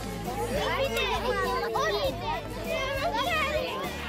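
A group of children talking and exclaiming over one another, their high voices overlapping.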